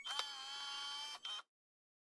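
A short electronic logo sting: a bright synthesized tone held for about a second and a half, with a brief dip near its end, then cut off abruptly.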